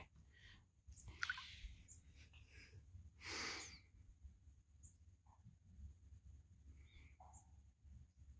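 Near silence: faint outdoor room tone with a low rumble. A soft breath comes about three seconds in, and two faint short chirps follow later.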